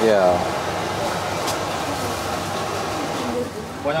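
Sweet potato balls sizzling in a wok of hot oil with a steady hiss, just after being dropped in at the start of frying.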